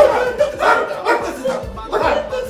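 Several men yelling and crying out over each other in a scuffle, with background music under them.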